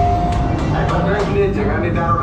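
Indistinct chatter of riders over the steady low rumble of the ride's transport-ship engine effects, with a short steady tone at the very start.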